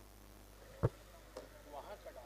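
A single sharp knock about a second in, a fainter click half a second later, then a brief distant voice near the end, all over quiet open-air background.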